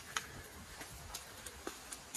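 Irregular light ticks and crackles, a few a second, over a low rumble: footsteps through long grass and dry leaf litter.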